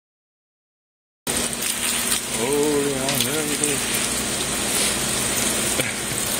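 Water spraying and splashing from a homemade tube cleaner, a 3/8-inch ACR copper tube with a brush and holes at its tip fed from a water line, as it is worked into the tubes of a chiller absorber. It starts about a second in and runs steadily.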